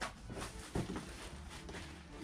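Cardboard box and plastic packaging being handled: rustling with a few light knocks, three of them in the first second.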